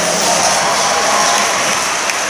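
Applause and crowd noise in a large sports hall, a steady loud haze.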